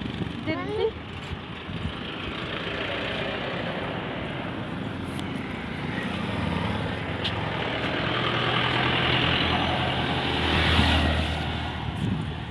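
Highway traffic: a steady rush of tyre and engine noise from passing vehicles, swelling as a heavy vehicle passes close near the end.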